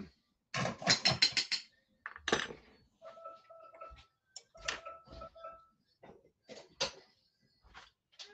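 Kitchen utensils clinking and scraping on pans and a plate as food is dished up: a quick run of about six taps half a second in, a louder scrape about two seconds in, then scattered clinks.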